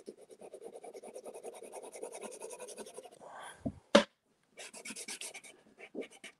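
Pastel stick scratching across a toned drawing board in quick, dense strokes for about three seconds. A single sharp tap comes about four seconds in, followed by another short run of strokes.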